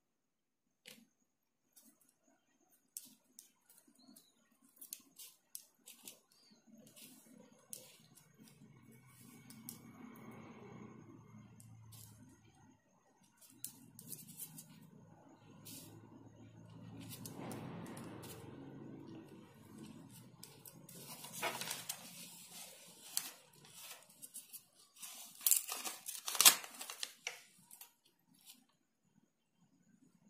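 Paper being handled on a tabletop: scattered small clicks and rustles, then a louder spell of paper crinkling and crackling about two-thirds of the way through as pasted collage pieces are pressed and smoothed down by hand.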